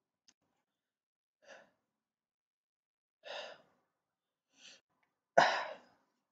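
A man breathing and sighing: a few short breaths, then a louder, sudden exhale a little after five seconds in.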